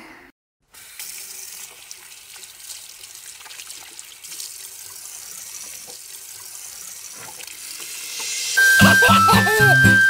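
Water running from a bathroom sink tap into the basin in a steady stream, starting just under a second in. Music starts near the end.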